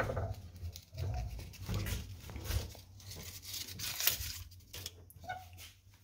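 A convent's wooden revolving torno being turned round, with low rumbles and knocks, bringing a plastic bag of cookies through the wall; a rustle about four seconds in.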